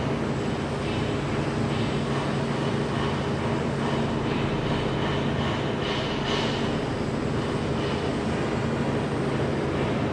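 Steady low hum over an even background noise, with a few faint brief higher sounds around the middle.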